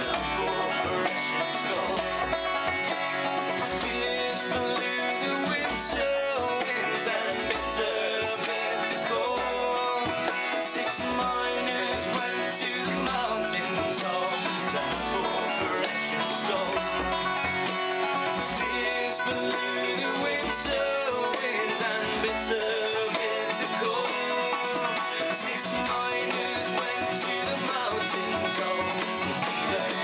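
Acoustic folk trio playing an instrumental passage: a strummed acoustic guitar and a picked banjo over a steady low beat from a hand drum, about one thump a second.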